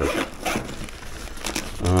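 Zipper on a soft fabric drone carrying case being pulled open in several short scratchy strokes, with the case's fabric rustling as it is handled.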